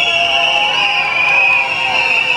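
A continuous shrill high-pitched tone that wavers slightly in pitch, over crowd voices.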